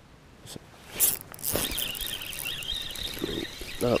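A hooked fish splashing briefly about a second in, then a steady, wavering high whine from the fishing reel as line is wound in during the fight.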